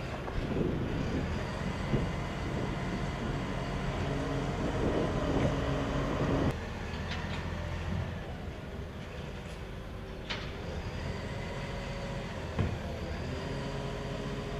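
Side-loading garbage truck's diesel engine running with steady mechanical whine, as its hydraulic arm grips and lifts a wheelie bin; a few sharp knocks. The sound drops abruptly about halfway through.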